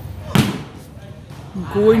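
A hand striking a volleyball once: a single sharp smack about a third of a second in, with a brief ring after it. Voices come in near the end.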